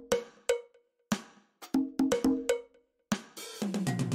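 Sparse electronic drum pattern from a browser music-coding app: about eight short, dry percussion hits with a brief pitched ring like a cowbell or wood block, spaced unevenly with short gaps between.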